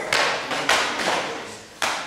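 Jiu-jitsu belts slapping across the back of someone walking a belt gauntlet: four sharp cracks at uneven intervals, the last near the end.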